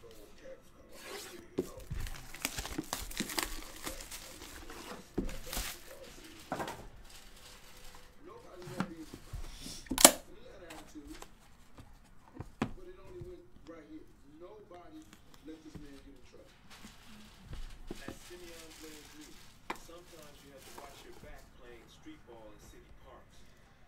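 Plastic shrink-wrap being torn and crumpled off a trading-card box, in a run of crackling rustles, then one sharp loud crack about ten seconds in, followed by quieter handling of the box.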